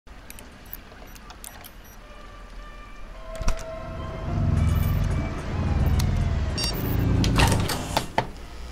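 Electronic sci-fi sound design: scattered clicks and short beeps, with a sharp click about three and a half seconds in. After that a low synth drone swells and fades three times, and a burst of noise comes just before the end.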